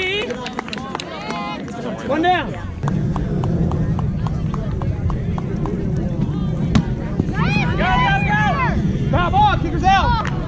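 Players' voices shouting and calling out across an open field in short bursts, over a steady low rumble that starts about three seconds in.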